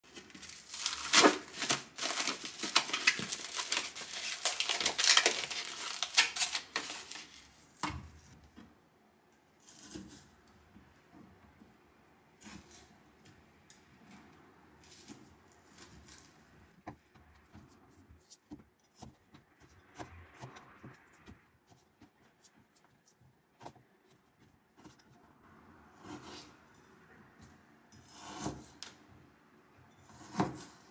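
Plastic food wrap crinkling and tearing as a tray of raw meat is unwrapped, loud for the first several seconds. Then a kitchen knife slices the meat into cubes on a plastic cutting board, with soft, scattered taps of the blade on the board.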